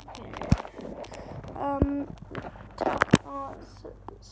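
A phone being handled close to its microphone: rubbing and rustling with three sharp knocks, about half a second, about two seconds and about three seconds in. A child makes two short vocal sounds, around the second knock and just after the third.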